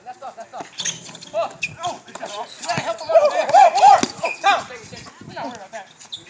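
Players' voices calling out and shouting across a basketball court, loudest about three to four seconds in. A few sharp knocks of a basketball bouncing on the court come through between the shouts.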